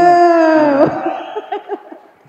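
A man's voice through a microphone holds one long drawn-out vowel for most of a second, and its pitch drops as it breaks off. Fainter scattered voices and clapping from the audience follow.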